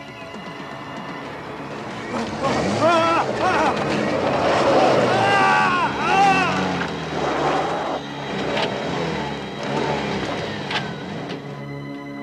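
Steady synthesizer film score with a person screaming in loud, rising and falling cries over it during a violent struggle, followed by a few sharp knocks.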